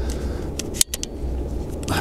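Low steady rumble with a few sharp clicks and knocks, the loudest just under a second in, from the fishing rod and aluminium landing-net handle being handled while a hooked fish is played.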